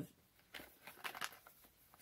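Small cardboard box handled in the hands: a run of faint rustles and light clicks after a short spoken syllable.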